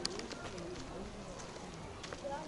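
Faint, low voices of people talking outdoors, with a sharp click near the start.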